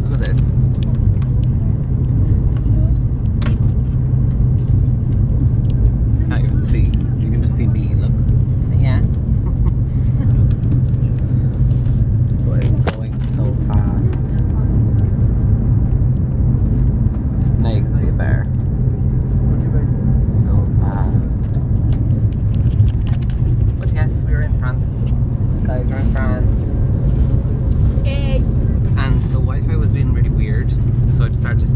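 Steady low rumble of a Eurostar high-speed train running fast, heard from inside the carriage, with snatches of quiet voices now and then.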